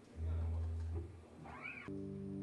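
Stage soundcheck instrument sounds: a low bass note held for nearly a second, then a short squeal that rises and falls in pitch, then a sustained chord that starts near the end.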